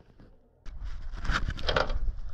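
Silence for about half a second, then a sudden start of noisy splashing and dripping water on a camera mounted on an anchor as the anchor is hauled up out of the water to the bow roller.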